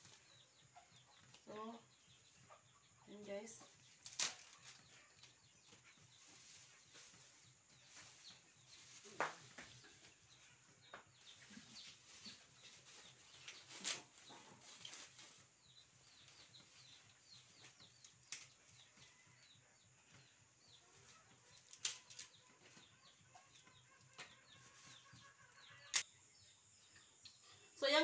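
A wok of pansit cooking over a wood fire, mostly quiet, with a few sharp clicks and knocks scattered through.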